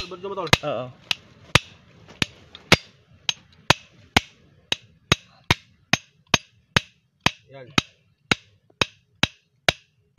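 Hammer striking a metal rod held against a gold-coloured metal bar, about two sharp, ringing strikes a second in a steady rhythm, cutting into the bar.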